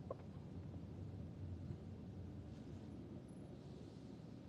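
Faint, steady low rumble of road noise inside a moving car, with a small click just after the start.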